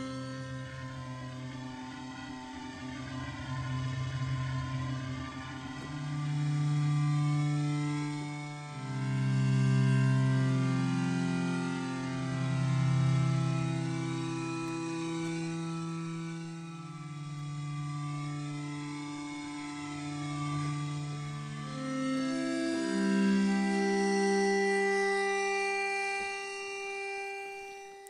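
Logic Pro X Sculpture software synth playing its 'Ambient Slow Bow' patch: slow, sustained bowed-string-like notes and chords, mostly low, each swelling and fading over a couple of seconds. A Modulator MIDI effect's LFO is moving a mass object on the modeled string, giving a subtle, organic variation in the tone.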